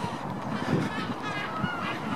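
Birds calling, a quick run of short calls about three a second, over a low background rumble.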